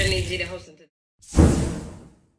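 Intro music fading out, a brief silence, then a whoosh sound effect that comes in suddenly just past a second in and fades away.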